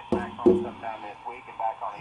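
A voice received on shortwave and played through the R-2322/G HF single-sideband receiver's loudspeaker. It is loud for the first half second, then goes on more faintly.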